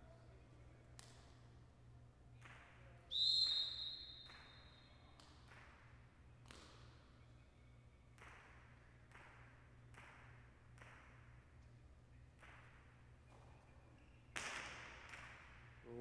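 Jai alai pelota cracking against the fronton walls, one sharp echoing hit about every half second to second in the large hall. A steady high whistle sounds about three seconds in for about two seconds, and a louder burst of noise comes near the end.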